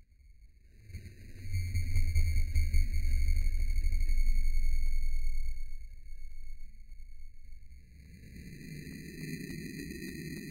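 A steady, high electronic tone with overtones over a low rumble. The rumble swells about a second in, eases off after about six seconds, and comes back more faintly near the end.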